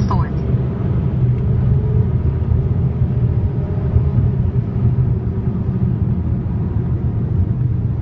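Steady low rumble of a car's engine and tyres at expressway speed, heard from inside the cabin.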